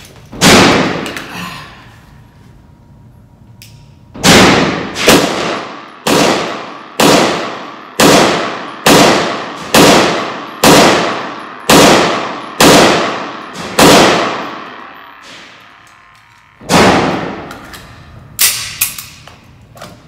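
Beretta M9 9mm pistol firing in an indoor range. One shot, then after a pause a steady string of about eleven shots roughly a second apart, then one more shot, each ringing out with a long echo. A few quieter sharp knocks follow near the end.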